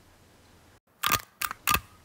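A quick run of four or five sharp clicks about a second in, after a near-silent start.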